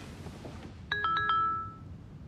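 Smartphone message alert: a short chime of four quick notes, about a second in, that rings on briefly and dies away.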